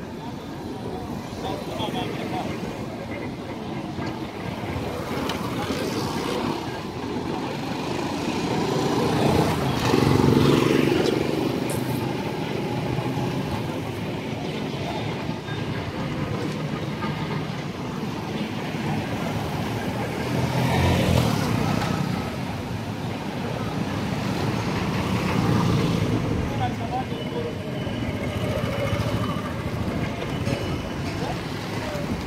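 Street traffic heard from a moving vehicle: engines of passing motorcycles and cars rise and fall over a steady road noise, loudest about ten seconds in and again about twenty-one seconds in, with voices of people on the street.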